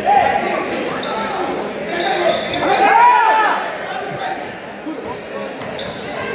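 Players' indoor shoes squeaking on a hardwood gym floor during an indoor soccer game. There is a short squeak at the start and a louder cluster of squeaks about halfway through, over the chatter of spectators in the hall.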